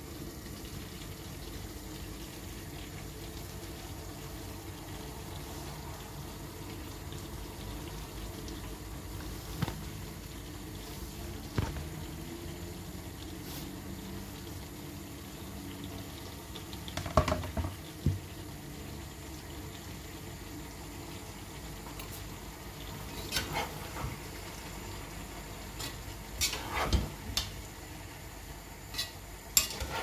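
Meat and vegetables with freshly added cabbage frying in a pan: a steady sizzle, with a few knocks and scrapes of a utensil stirring in the pan, most of them near the middle and towards the end.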